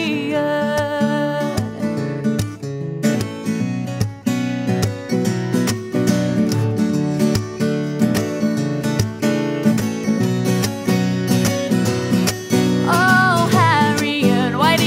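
Steel-string acoustic guitar played solo in an instrumental passage between verses. A sung female note trails off in the first second or so, and the voice comes back in near the end.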